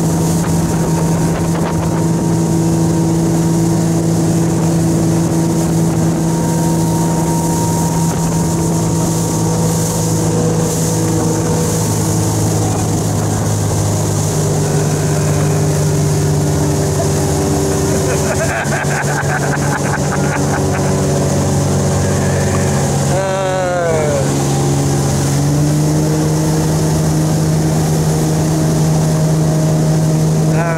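Motorboat engine running steadily at towing speed, its pitch shifting slightly a couple of times, over the rush of wind and water spray from the wake.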